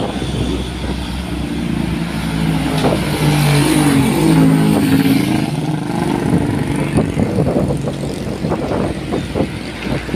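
Road traffic passing close by: a motor vehicle's engine note swells, rises a little in pitch and fades away, over a steady rumble of other traffic and tyre noise.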